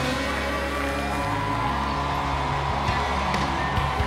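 Country-rock band music led by guitar, the band holding long chords with only occasional drum hits, and a short rising guitar slide a little over a second in.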